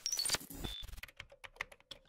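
Computer keyboard typing: a quick, uneven run of key clicks that sets the on-screen lettering going.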